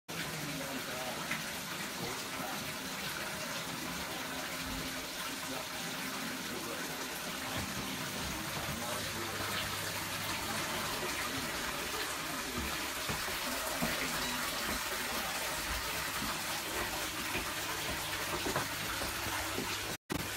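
A stream of water pouring into a large fish tank and splashing steadily onto the water surface, as the tank is refilled with fresh water after half of it was drained.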